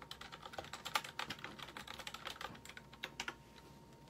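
Typing: an irregular run of light clicks, several a second, that stops about three and a half seconds in.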